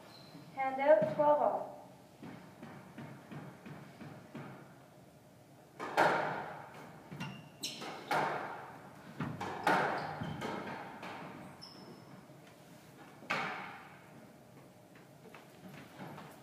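Squash ball struck by rackets and hitting the court walls in a rally: about six sharp cracks, one to three seconds apart, starting about six seconds in, each echoing in the court.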